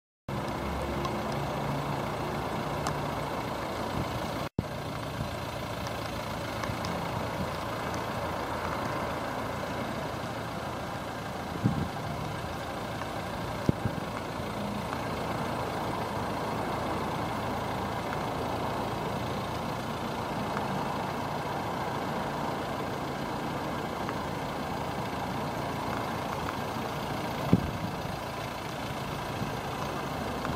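Nissan Qashqai dCi diesel engine idling steadily, heard from outside the car, with a few sharp clicks and a brief dropout about four and a half seconds in.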